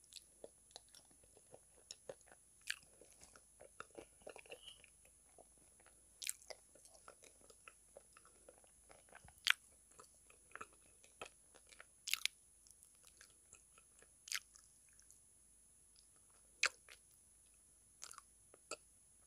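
Close-miked eating sounds of a thick brown paste mixed with ulo (calabash clay), eaten off the fingers: soft wet chewing and lip smacks, broken by short sharp crunches or clicks every couple of seconds, the loudest about halfway through.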